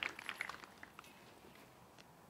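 Tail of laughter fading out in the first second, then faint open-air ambience with almost nothing else.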